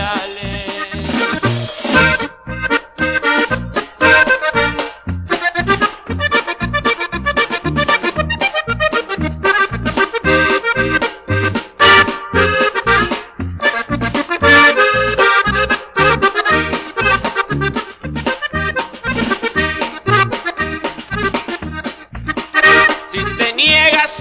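Instrumental break in a norteño corrido: accordion playing the melody over a steady, evenly pulsing bass beat, with no singing.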